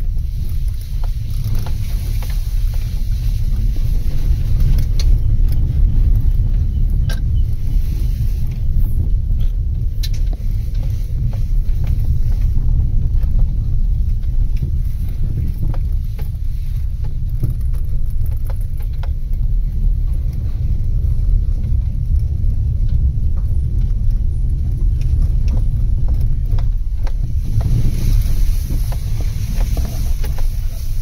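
Car driving along a rough forest dirt track, heard from inside the cabin: a steady low rumble with scattered faint clicks and knocks.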